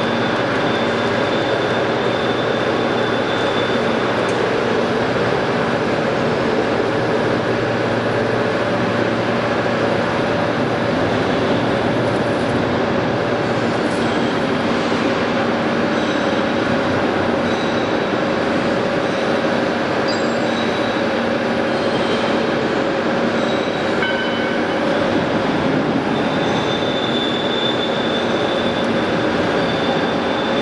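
Hydraulic CNC press brake running: a steady mechanical drone with a high whine from its pump and motor, amid workshop noise. A low hum underneath stops about halfway through.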